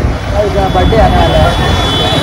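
Wind rushing over the microphone with the engine and road noise of a Yamaha R15 V3, a 155 cc single-cylinder sport bike, under way, with voices talking over it. A thin steady high tone comes in soon after the start.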